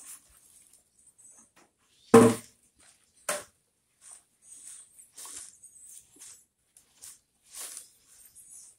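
Coarse soil being rubbed and pushed through a wire-mesh sifting screen by gloved hands, heard as a run of short scratchy rasps from about four seconds in. A single loud, short animal call, like a bark, sounds about two seconds in.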